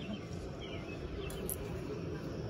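Quiet outdoor background: a few faint bird chirps over a steady low rumble.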